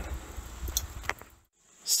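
Faint background noise with a low hum and a couple of light clicks, cut off abruptly into a moment of dead silence.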